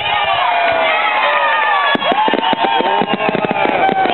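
Fireworks going off over a crowd of many voices shouting and cheering. From about two seconds in, a rapid run of crackling pops from the bursting shells.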